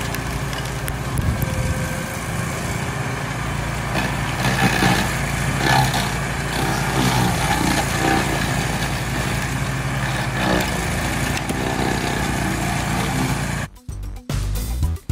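Compact Bandit stump grinder's engine running steadily under load as its cutter wheel grinds bamboo stump and rhizomes into mulch, rougher and louder about four to six seconds in. The sound cuts off sharply just before the end.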